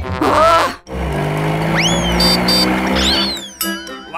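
Cartoon sound effect of a car speeding in and skidding, with tire squeals that rise and fall in pitch, played over background music. A short vocal sound comes just before it, in the first second.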